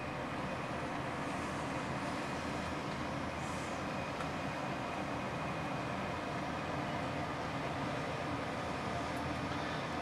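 Steady room tone: a constant low hum and hiss with no distinct events.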